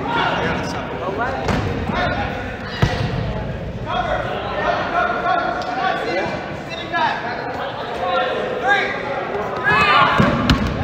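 Several players shouting and calling to each other at once across a gym, with dodgeballs bouncing and thudding on the court, one sharp hit about three seconds in.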